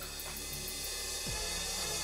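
Background score music with drums and cymbals, with a short low downward sweep a little past the middle.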